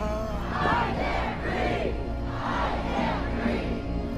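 A crowd of protesters shouting, several voices rising and falling over one another, with a low steady music bed underneath.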